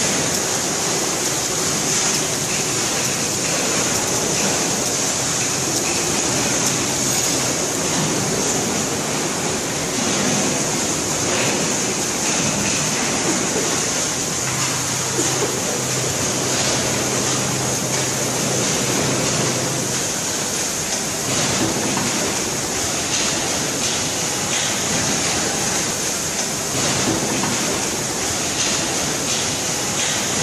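Large horizontal stator coil winding machine running, its winding former turning and drawing copper wire into coils: a steady rushing noise, with a low hum added for several seconds midway.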